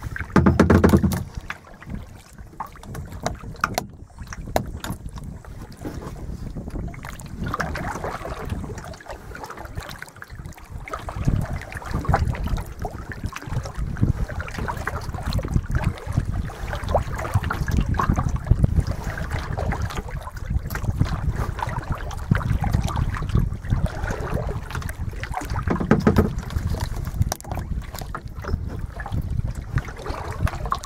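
Wind buffeting the microphone in uneven gusts, the strongest about a second in, over choppy lake water lapping against a plastic kayak's hull.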